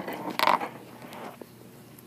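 Brief creak of the rabbit's wire cage as it is moved, loudest about half a second in.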